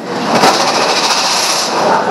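Loud rattling clatter with a rushing hiss, swelling about half a second in and easing near the end.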